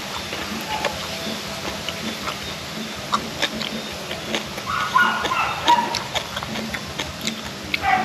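A short animal call about five seconds in, over scattered small clicks.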